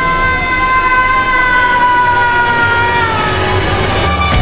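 A young woman's long, unbroken scream, held on one high pitch that sinks slowly and dies away shortly before the end, over a low rumble.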